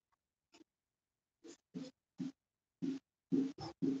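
Marker pen writing on a whiteboard: a string of short separate strokes that start about a second and a half in and come closer together near the end.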